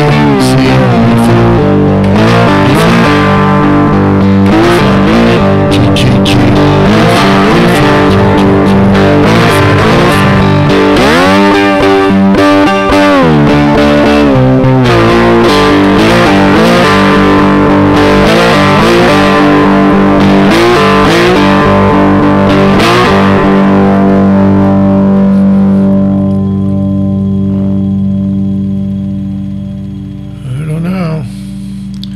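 Guitar playing a blues accompaniment in G, with notes gliding up and down about eleven to thirteen seconds in. Near the end a last chord is left ringing and fades away.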